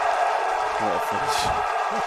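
A football commentator's voice briefly over steady stadium background noise just after a goal, with a few short voiced sounds about a second in.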